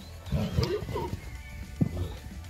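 Background music, over which a horse gives a rough cry about half a second in, then a single thump near the end.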